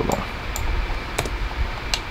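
A few short, sharp clicks from a computer mouse and keyboard over a steady low hum.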